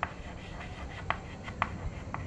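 Chalk writing on a blackboard: a few short, sharp scratches and taps as the letters are stroked on.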